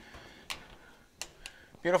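Four light clicks and taps from the sheet-steel dash panel as it is nudged by hand to check its fit in the car body.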